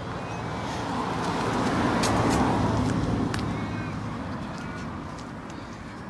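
A car passing by on the street: its road noise swells to a peak about two seconds in, then fades away over the next few seconds.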